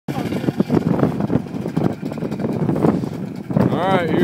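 Onlookers' voices over an ATV engine running. Near the end a voice rises into a loud call or laugh.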